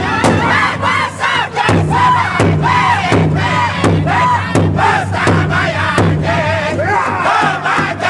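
Northern-style powwow drum group singing in high-pitched unison over a large powwow drum, the drumsticks striking together in a steady beat.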